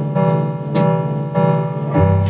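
Electric guitar played through an amplifier: a chord or note struck in an even rhythm, a little under twice a second, each one ringing on into the next.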